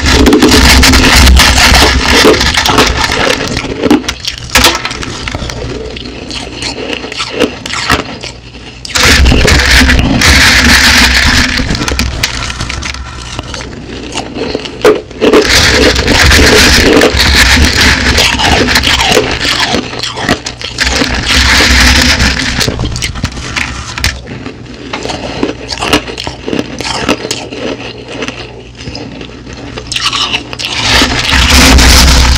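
Crushed ice crunching and scraping close to the microphone as it is chewed and scooped by hand from a plate. It comes in three long loud stretches, with quieter crackling in between.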